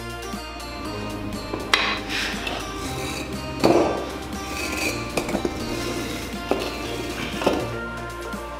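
Background music over several sharp knocks and clunks, the loudest about three and a half seconds in, from concrete blocks being shifted and a steel hydraulic floor jack being let down under a car.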